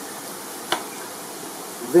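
Steady hiss of wind on the microphone, with one short, sharp click about three-quarters of a second in.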